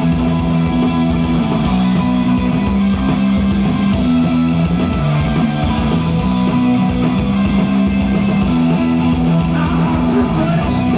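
A rock band playing live, recorded from among the audience: a bass line of held low notes that step from one pitch to another about every second, with electric guitar over it and no vocals.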